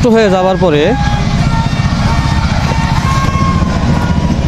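Steady low rumble of wind buffeting the microphone outdoors, running under a man's brief words in the first second.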